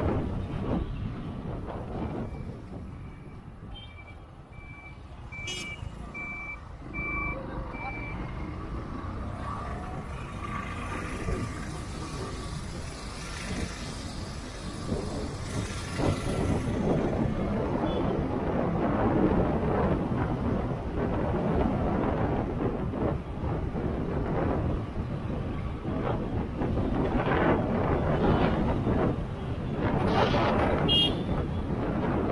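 Wind buffeting the microphone of a moving vehicle's camera over road and traffic noise, growing louder after the first several seconds. Early on, a series of short electronic beeps sounds at one pitch, about one a second, for around six seconds.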